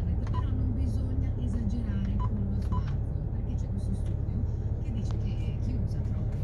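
Short single-pitch beeps from an aftermarket Android car head unit confirming button presses: one just after the start and two close together about two seconds in. Italian FM radio talk plays through the car's speakers over a low steady hum.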